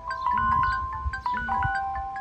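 A bell-like electronic chime melody: short, clear pitched notes over a low figure that repeats about once a second, in the manner of a looping phone alarm or ringtone.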